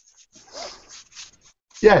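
Faint, scratchy rustling as an earbud is adjusted in the ear by hand, rubbing close to the microphone.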